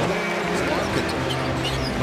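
Background music with steady held notes over the sound of an arena basketball game: crowd noise and court sounds.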